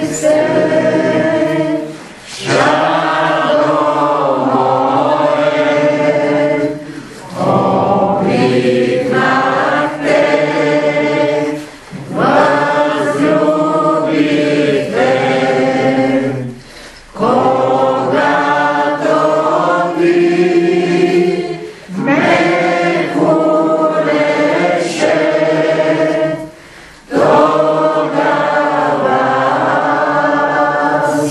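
A group of voices singing a hymn together, apparently unaccompanied. The phrases last about five seconds each, with a short break for breath between lines.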